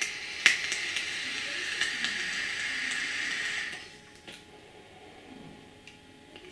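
Joyetech eVic AIO e-cigarette being drawn on: a steady hiss of the firing coil and air pulled through the tank for nearly four seconds, with a sharp click about half a second in. The device is set at about 30 watts.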